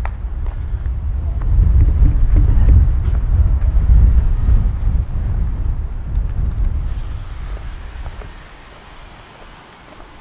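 Wind buffeting the camera microphone: a loud, gusty low rumble that dies away about eight seconds in.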